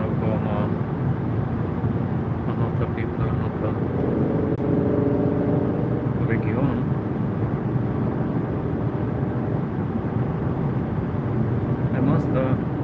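Steady road and engine noise of a car at motorway speed, heard from inside the cabin.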